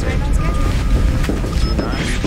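Steady low rumble of a spaceship bridge's background ambience, with a few faint short tones over it.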